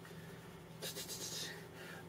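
A brief soft rustle of hand and clothing movement about a second in, over a faint steady low room hum.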